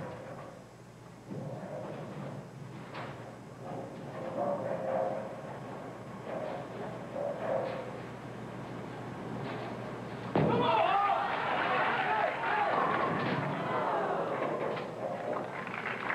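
Bowling ball rolled down a lane into the pins, with the arena crowd murmuring during the approach. About ten seconds in the sound jumps sharply and the crowd reacts loudly: the shot goes high and leaves the 3-9-10.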